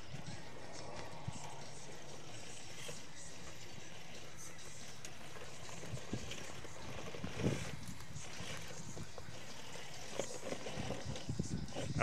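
RC rock crawler climbing slowly over loose rocks: a steady low drivetrain noise with occasional scrapes and knocks of tyres and chassis on stone, the clearest knock about seven and a half seconds in.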